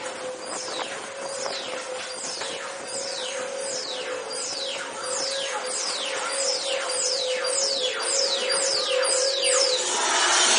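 Space Mountain's electronic sci-fi ride effects in the blue light tunnel: a rapid series of falling synthesized zaps, about two a second, over a steady electronic hum.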